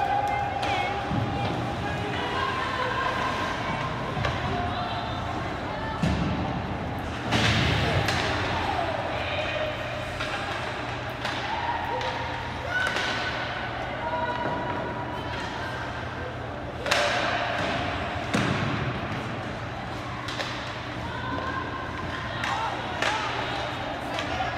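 Ice hockey play: sharp knocks and thuds of the puck, sticks and players against the boards, the loudest about seven and seventeen seconds in, with spectators' and players' voices calling out throughout.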